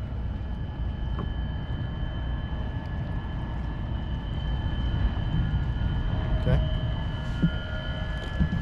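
Steady low rumble of distant machinery with a constant thin high-pitched whine over it, and a couple of faint small clicks.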